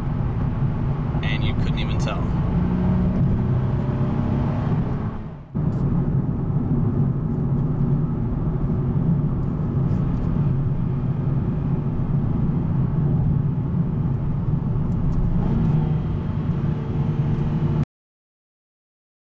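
Engine and road noise of a 2009 Nissan 370Z's V6 heard from inside the cabin while driving at highway speed, steady and loud. The sound dips out abruptly about five and a half seconds in, picks up again, and cuts off suddenly just before the end.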